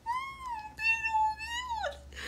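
A woman's long, high-pitched cooing 'ooh', held steady for nearly two seconds and dropping in pitch at the end.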